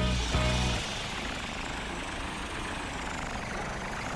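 Cartoon truck driving sound effect, a steady even rushing noise as the animated truck drives up the road. A low held chord of background music fades out in the first second.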